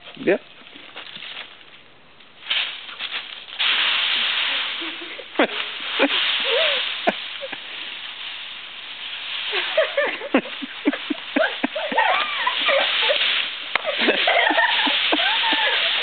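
Dry leaves crunching and rustling as a puppy bounds through a leaf pile, loudest from about four to nine seconds in and again near the end. People's voices and short exclamations come in during the second half.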